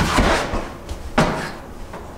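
Thuds of a man being knocked backwards against a door frame and falling to the floor: a heavy thud at the start, then another knock about a second later.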